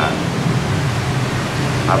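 Steady, even hiss with a low hum underneath: an electric fan running in a room.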